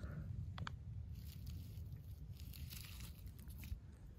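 Faint crackly rustling of dry leaf litter over a low rumble, with a couple of soft clicks just over half a second in.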